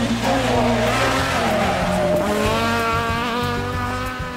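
Rally car engine pulling hard past a bend. Its pitch dips about halfway through, then climbs as the car accelerates away, over background music.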